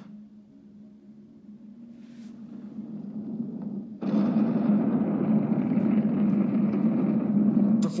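A cinematic rumble sound effect from a documentary soundtrack, heard through a screen's speakers, accompanying Big Bang and nebula imagery. It swells slowly for about four seconds, then jumps suddenly louder into a dense low rumble that holds.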